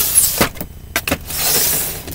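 Plastic drawers of a chrome-framed rolling storage cart sliding in their runners, with a few sharp knocks about half a second and a second in, then a longer scraping slide near the end.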